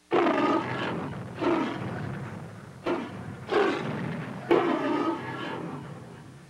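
A dinosaur character's voice delivering lines of dialogue as a series of rough, growling roars rather than words, in about five phrases that grow quieter toward the end.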